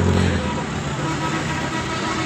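A vehicle engine running with a low steady hum, which weakens about half a second in, over a background murmur of voices.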